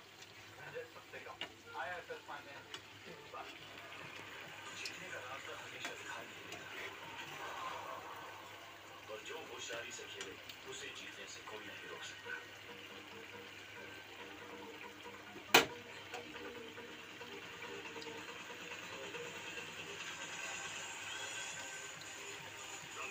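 Fish curry in mustard gravy simmering and sizzling in a kadhai on a gas stove, with a wooden spatula stirring now and then. A single sharp click about two-thirds of the way through.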